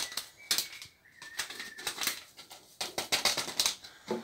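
Paper sachet of vanilla flan powder rustling and crinkling as it is opened and shaken out over an aluminium saucepan, with a string of short, irregular clicks and taps.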